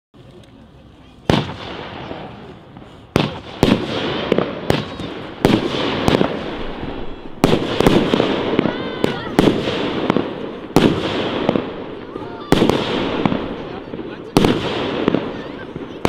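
Jorge Solaris 12-shot consumer fireworks cake firing: after a quiet first second, a rapid series of sharp bangs from shots launching and bursting, about one every second, each trailing off before the next.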